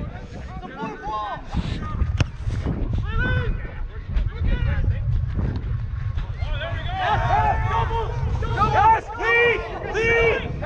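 Rugby players' voices calling across the pitch during open play, over a low wind rumble on a running referee's body-worn camera microphone. The calling gets louder and busier in the last few seconds as a ruck forms, and there is one sharp click a couple of seconds in.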